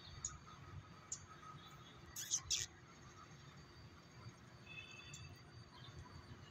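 Faint outdoor background with a low rumble, broken by two short sharp noises about two seconds in and a brief faint chirp near the end.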